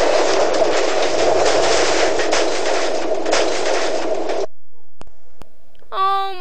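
A dense, rough crashing noise, an added sound effect for the punch and the toy engine's crash, that runs on steadily for about four and a half seconds and cuts off suddenly, followed by two faint clicks.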